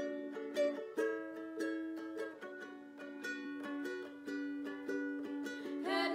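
A ukulele being strummed, playing a steady run of chords as an instrumental introduction with no voices yet.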